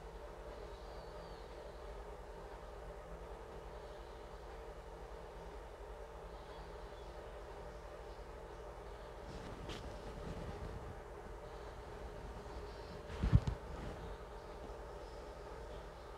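Quiet room tone with a steady low hum, broken by a short thump a little under three seconds before the end.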